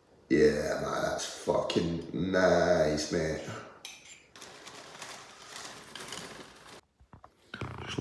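A man's voice making wordless vocal sounds for about three seconds, then a faint steady hiss.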